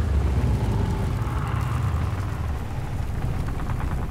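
Deep, steady rumble under a rushing hiss of sand: film sound design for a giant sandworm rising out of the desert.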